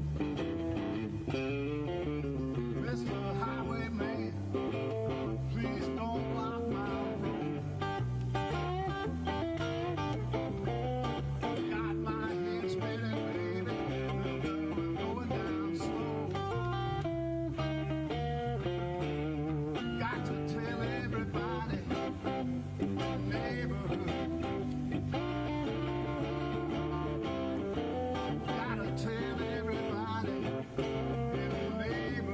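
A live blues band playing a song: a man sings into a microphone over electric guitar and a steady, repeating bass line.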